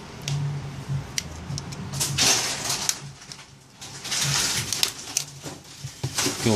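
Short sharp clicks as the plastic clips of a Samsung Galaxy S Advance's inner back panel are pried loose, then louder scraping rustles about two seconds in and again around four seconds as the panel is worked free of the phone.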